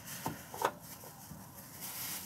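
Faint rustling and handling noise, with two brief soft sounds in the first second.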